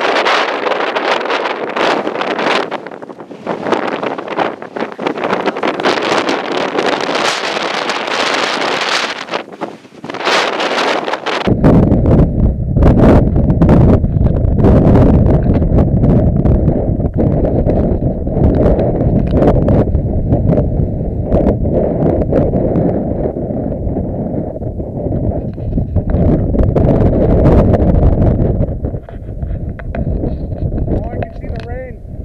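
Strong wind on the microphone during a thunderstorm: a gusting hiss at first, then from about eleven seconds in a loud, heavy low rumble of wind buffeting the mic.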